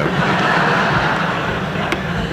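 Audience laughing together, a dense steady wash of laughter filling the hall.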